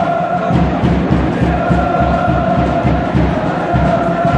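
Football supporters' end singing a chant together in unison, holding long notes with short breaks between phrases. A drum beats steadily underneath.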